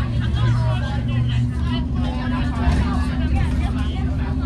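Bus engine droning low as the bus drives along, heard from inside the cabin, its note shifting about a second and a half in. Indistinct passenger chatter runs over it.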